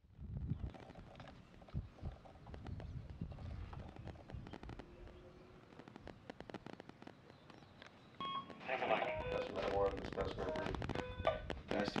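A low rumble with scattered clicks and knocks, then a man talking from about eight seconds in.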